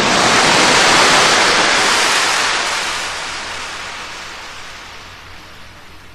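Sea surf: one long swell of wave noise that builds over the first second, then slowly dies away.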